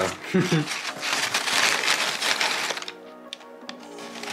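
Crumpled brown packing paper and a sheet of paper rustling and crinkling for about two seconds as a folded letter is pressed into a cardboard box. Soft background music plays underneath.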